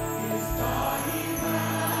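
Church orchestra and choir performing a worship song: held instrumental chords, with singing voices coming in just after half a second in.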